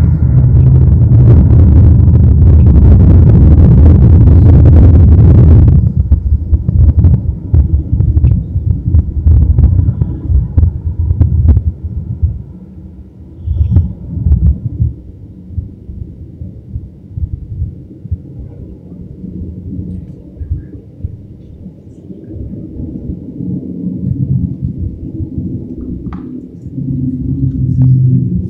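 A loud, deep rumble like thunder from the soundtrack of a rapture dramatization film, lasting about six seconds and stopping abruptly. It is followed by quieter, uneven low rumbling with scattered knocks that dies down.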